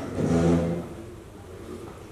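A man's voice through a microphone, drawing out the last syllable of a phrase in the first second. It is followed by the faint, steady room tone of the hall's sound system.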